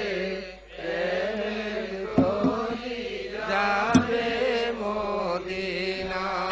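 Quiet, sustained chant-like singing: drawn-out tones held at a steady pitch, dipping briefly about half a second in.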